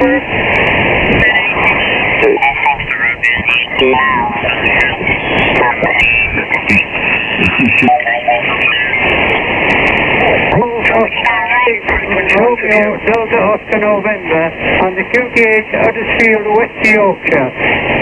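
Kenwood TS-590 HF transceiver receiving lower-sideband signals on the 40 m amateur band while being tuned across it: band hiss and noise with snatches of voices for roughly the first ten seconds, then a station's voice coming through more steadily. The audio has the narrow, thin sound of an SSB receiver, with nothing above about 3 kHz.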